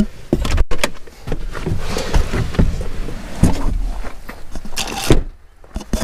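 Clicks, clunks and rustling as the driver climbs out of a pickup truck's cab and handles the camera, with a loud thump about five seconds in, then quieter.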